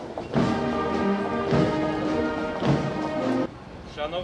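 Marching brass band playing a march: held brass and saxophone chords over a bass drum struck about once a second. The music cuts off abruptly near the end.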